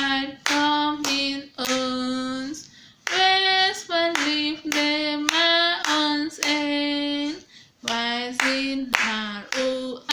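A woman's solo voice singing a Dutch hymn a cappella: held notes moving up and down in small steps, with short breaths between phrases.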